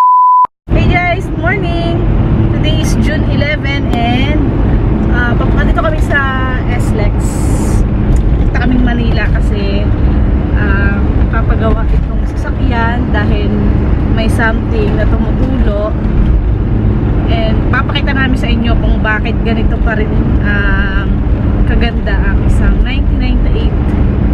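A short, steady, high test-tone beep at the very start, then the constant low road and engine rumble inside the cabin of a moving 1998 Mitsubishi Pajero.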